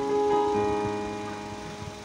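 Electronic keyboard holding a chord, with a few more notes joining about half a second in, then slowly fading.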